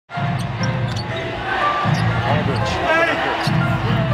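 Game sound from an NBA arena: a basketball dribbled on a hardwood court under a steady wash of crowd noise, with short high sneaker squeaks, the longest a bending squeal about three seconds in.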